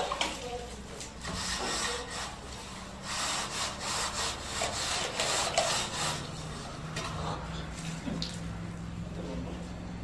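Long straight-edge bar scraping over wet cement plaster on a block wall, in repeated strokes that are densest in the first six seconds.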